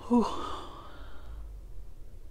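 A woman's "whew": a short voiced start, then a long breath blown out through pursed lips, fading away after about a second and a half.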